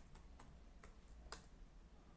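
A few faint computer-keyboard keystrokes as a terminal command is finished being typed, the last and loudest a little over a second in, as the command is entered.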